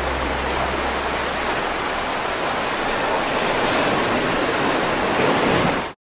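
Ocean surf: a steady rushing wash of waves with no music over it, which cuts off abruptly just before the end.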